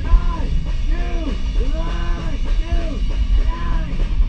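A rock band playing live: distorted electric guitar, bass and drums, with the singer's voice over them.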